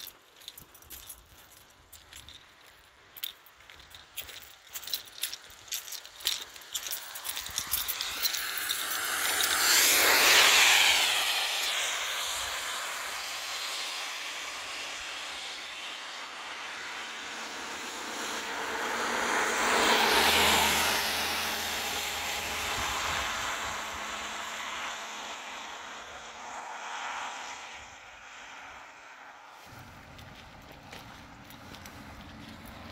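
Two vehicles passing on a rain-wet road, their tyres hissing through the water. The first swells and fades about ten seconds in and the second about twenty seconds in, with a few sharp clicks in the first several seconds.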